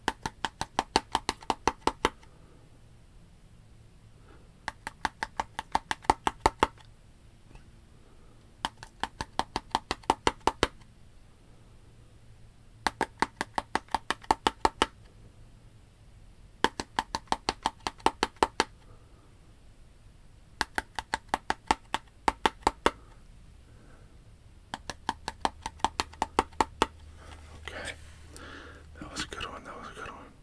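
Fingernails tapping a plastic bottle in a fast rhythm, about five taps a second, in seven bursts of about two seconds each with short pauses between. Softer, irregular sounds follow near the end.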